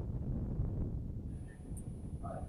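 Wind buffeting the microphone outdoors: a low, uneven rumble.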